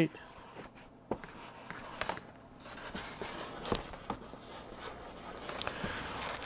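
Faint rubbing and scratching of a hand smoothing iron-on laminating film over a foam RC plane hull, with a few light clicks spread through.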